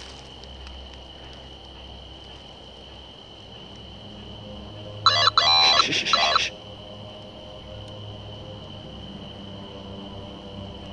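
A steady, high-pitched insect trill over a low hum. About halfway through, a loud pitched call comes in a few broken parts and lasts about a second and a half.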